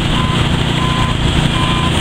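Heavy diesel engine of a concrete pump truck running steadily during a pour. A vehicle's reversing alarm beeps three times over it, about two-thirds of a second apart.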